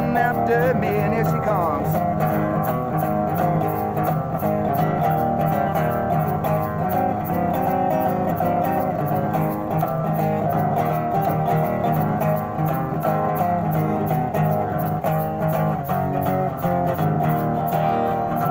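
Resonator guitar strummed in a steady, even rhythm through an instrumental break between verses, with the last sung note trailing off in the first second.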